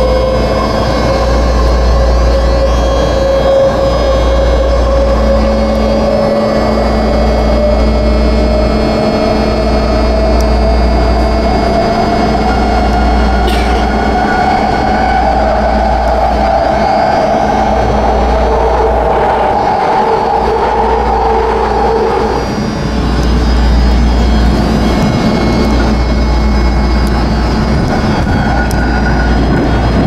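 BART train heard from inside the car: a propulsion whine rises slowly in pitch as the train gathers speed, over a steady low rumble of wheels on rail. About twenty seconds in the whine drops away and the car runs on with rumble and rail noise.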